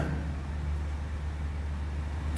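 A pause in speech: a steady low hum with an even background hiss, the room and sound-system noise underneath the voice.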